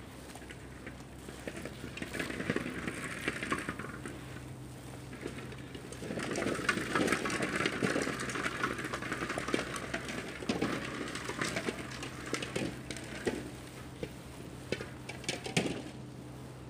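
Nylon fishing net and rope dragging and rustling over concrete paving, a scratchy crackle that comes in three spells, loudest in the middle, over a steady low hum.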